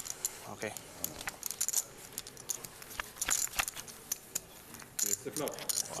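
Poker chips clicking and clinking against each other at the table: an irregular stream of small, sharp clicks.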